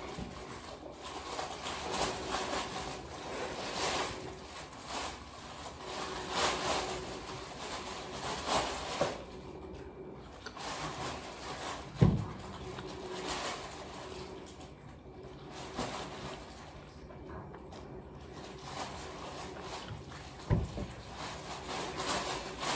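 A person eating curried chicken with her fingers: chewing, lip smacks and finger-licking. Two sharp thumps come through, the louder one about halfway through and another near the end.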